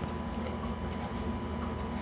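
Steady low background hum and hiss with a thin, faint steady tone, and no distinct events.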